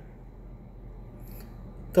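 Low, steady background hiss between spoken phrases, with one faint brief tick about a second and a half in.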